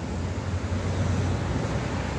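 Steady rush of road traffic, cars' tyres and engines going by, with a low hum that is strongest in the first second.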